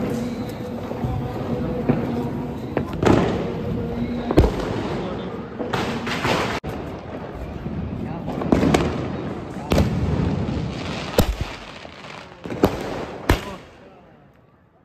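Fireworks going off: a series of sharp bangs at irregular intervals of roughly one to two seconds over a continuous crackle, from aerial shells bursting overhead and scattering sparks.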